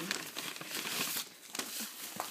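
Clear plastic cellophane wrapping crinkling as it is handled by hand, busiest in the first second or so, then a few scattered crinkles.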